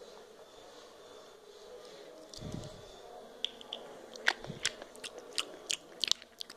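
Small plastic dolls and toy furniture being handled: a dull thump about two and a half seconds in, then a run of sharp, irregular clicks and taps.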